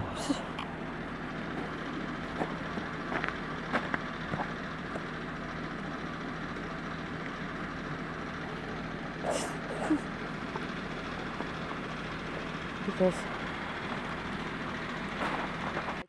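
Steady, even hum of vehicle engines idling, with a few brief faint voices and small knocks over it.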